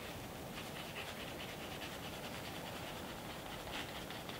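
Cotton chamois rubbing in hard wax shoe polish (Saphir Mirror Gloss) in small, quick circles, a faint, fast, rhythmic swishing of cloth on wax while a coat is worked in.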